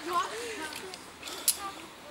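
Indistinct voices of people talking in the background, with a single sharp click about one and a half seconds in.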